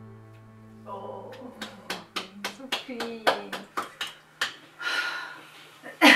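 Sustained chords of a song playing back through studio monitors die away in the first second. Then come voices with a quick run of sharp clicks, about four a second, lasting a few seconds.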